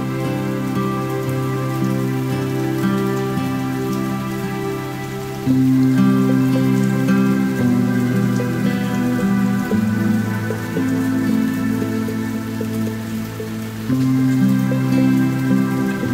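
Instrumental acoustic music with no singing: sustained chords changing every few seconds, getting louder on a new chord about five and a half seconds in and again near the end.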